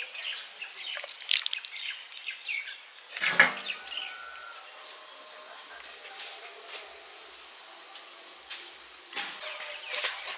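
Spoon scraping and clinking against a metal kadai as cooked greens with fish head are scooped into a bowl, with a louder knock about three seconds in. After that it goes quieter, with faint bird chirps.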